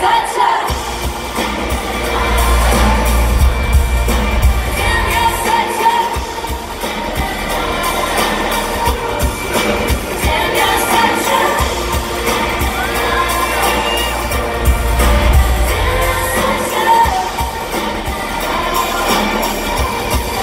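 Live pop music with a band and a female singer, heard from the crowd, with a heavy bass beat that is strongest in the first few seconds and again about three-quarters of the way through, and crowd noise mixed in.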